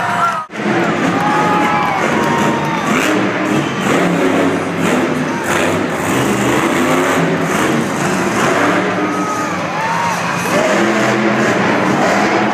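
Monster truck engine revving hard in repeated rising and falling surges, under a cheering arena crowd. The sound drops out briefly about half a second in.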